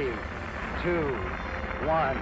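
Steady low rumble of the Saturn V's first-stage engines at ignition, under a launch-control voice counting down "two, one".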